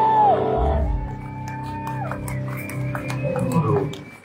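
Electric guitars ringing out with long held feedback tones that bend and slide down in pitch. The sound fades away near the end as the song finishes.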